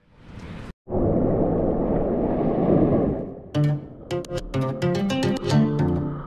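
A loud rushing noise lasts about two seconds after a short swell and a brief dropout. Then plucked-string background music with guitar starts about three and a half seconds in, its notes on a steady beat.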